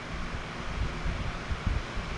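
A pedestal fan running, its airflow buffeting the microphone as a steady rumbling rush, with a few light knocks in the second half.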